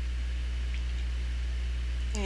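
Steady low electrical hum with a faint hiss underneath, unchanging throughout, with no other sound.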